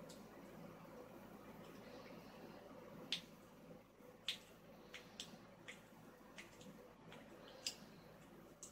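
Faint, irregular metallic clicks of a lock pick working the wafers inside a vintage Yale wafer padlock, a scattered handful in the second half, the two loudest about three and four seconds in, over a low steady hum.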